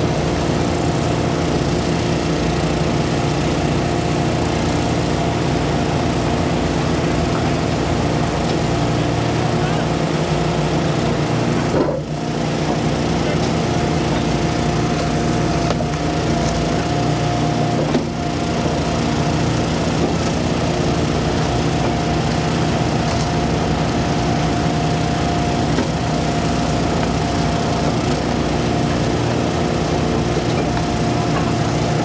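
Small gas engine of an Eastonmade 12-22 wood splitter running steadily at a constant speed, with wood cracking now and then as logs are split on its six-way wedge.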